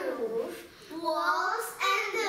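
Two young girls chanting an English nursery rhyme together in a sing-song voice, with a short pause between lines about half a second in.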